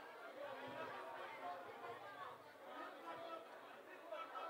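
Faint, indistinct chatter of several people talking at once, with no clear single voice.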